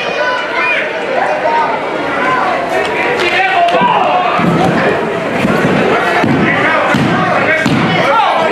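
Heavy thuds on the wrestling ring's canvas, several in a row about a second apart in the second half, as wrestlers land on and are pinned to the mat, over a crowd shouting.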